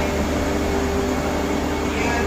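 Steady electrical hum and whir of a Vande Bharat Express electric train set beside the platform, with a low drone and one held tone.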